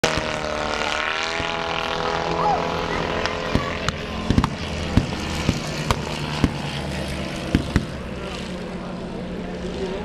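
A propeller-driven aircraft's piston engine drones overhead, its pitch shifting slightly in the first couple of seconds. About nine sharp cracks ring out, irregularly spaced, from about three and a half to eight seconds in.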